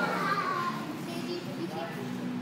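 Children's voices calling out while playing, with a high-pitched child's call in the first second.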